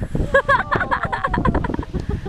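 Old Faithful geyser erupting: a steady low rush of water and steam, mixed with wind buffeting the microphone. A person laughs in short bursts through the first half.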